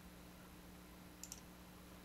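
Near silence with a faint steady low hum, and one faint computer mouse click a little over a second in.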